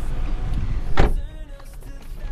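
Noise from outside coming into an open car, cut short by one loud thump about a second in as the car is shut. After the thump the sound is noticeably quieter.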